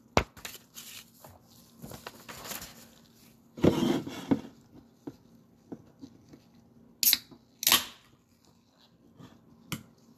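Handling noises: a sheet of paper rustling, loudest about four seconds in, with a few light knocks and two short sharp noises near the end.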